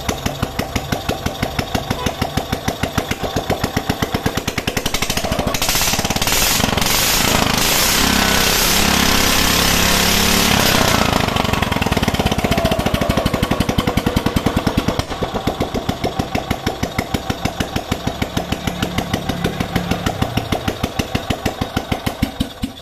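Kawasaki FE350D single-cylinder petrol engine running with its firing pulses clearly heard. About five seconds in it is revved up and held high for several seconds, then its speed falls back to a steady pulsing idle.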